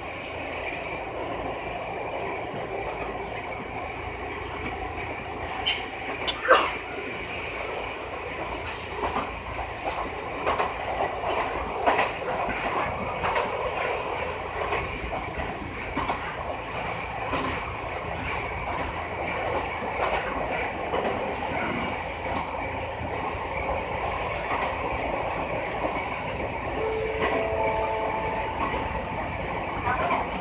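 Electric commuter train of the Wakayama Electric Railway Kishigawa Line running along a single track, heard from the front cab: a steady running noise with scattered clicks from the wheels, the loudest about six and a half seconds in. A brief tone of a few notes sounds near the end.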